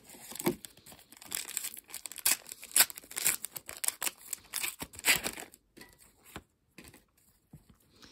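A Match Attax Extra trading-card pack being torn open by hand, its wrapper crinkling and ripping in a run of crackles for about five seconds, then only a few faint rustles of handling.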